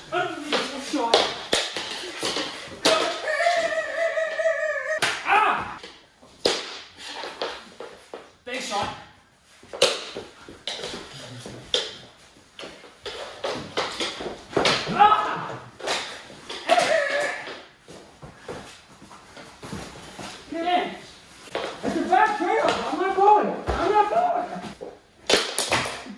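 Knee hockey on a wooden floor: a busy run of sharp clacks and knocks from mini sticks, the ball and bodies hitting the floor, mixed with wordless shouts and grunts from the players, including one long yell a few seconds in.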